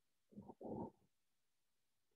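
Near silence with two faint, short, low breath sounds about half a second in.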